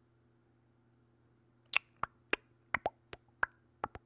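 A faint steady low hum, then, from a little before halfway, an uneven run of about eight short, sharp clicks, roughly three a second.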